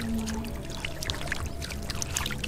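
Shallow muddy water splashing and trickling in many small irregular drops as hands work in a pool with catfish, over faint background music.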